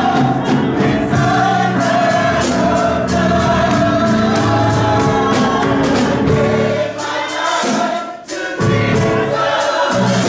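Gospel choir singing, accompanied by a drum kit with steady cymbal strikes and a keyboard. The music breaks off for a moment about eight seconds in, then comes back in full.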